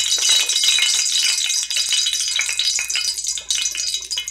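Hot oil in a cast iron skillet sizzling and crackling where drops of water have been dropped in, thinning out about halfway through: the spitting shows the oil is hot enough to brown flour.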